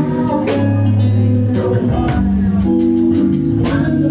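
A live band playing a song, with electric guitar, bass guitar and drum kit over keyboard.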